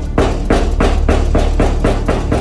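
Suspense film score: a fast, even run of percussive hits, about five a second, over a steady low drone.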